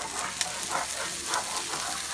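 Diced vegetables and a melting pat of butter sizzling in a frying pan, with soft scrapes as a spatula stirs them every few tenths of a second.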